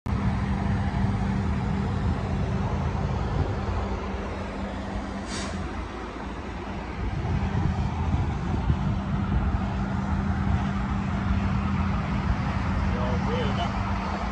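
Diesel truck engine idling steadily, a low rumble with a constant hum, and a brief hiss about five seconds in.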